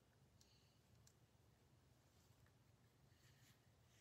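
Near silence: room tone, with a few faint clicks and scrapes of tarot cards being handled on a cloth-covered table.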